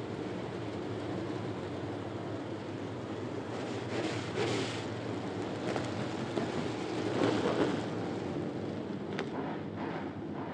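A pack of dirt-track street stock race cars running past with their engines at speed. Their combined engine drone swells twice as groups of cars go by, about four and seven seconds in.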